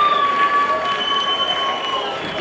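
Audience applause tailing off, with a steady high whistling tone held through it, drifting slightly down in pitch.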